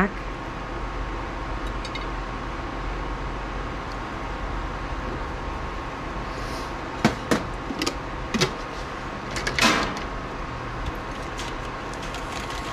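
Light clicks and clinks of a spoon and containers as dye is stirred and mixed in a plastic measuring cup and glass jar. They come several in quick succession between about seven and ten seconds in, over a steady low hum.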